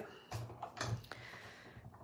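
Hand-cranked die-cutting machine drawing a plate sandwich with a metal die through its rollers: a few faint ticks, then a soft steady rolling sound.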